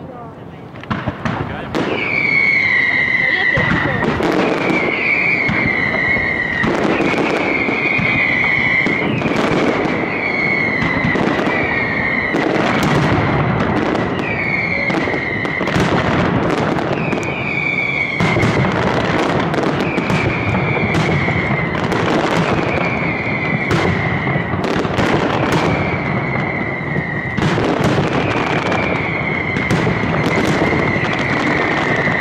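Aerial mascletà firework barrage: after a lighter start, a dense, unbroken run of firecracker bangs and cracks in the sky builds up about two seconds in. Over it, whistling fireworks keep sounding, one high whistle falling slightly in pitch every second or two.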